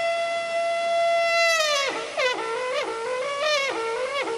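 A folk horn blown: one long, held high note, then a drop to shorter, lower notes that each scoop up into pitch, about three of them.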